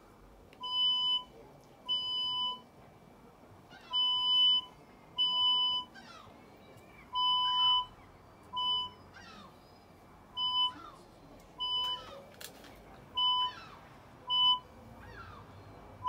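C.A.T4 cable avoidance tool beeping as it is swept over paving: about a dozen short electronic beeps at irregular intervals, the later ones shorter. The beeps are the locator's response to a buried cable or pipe beneath.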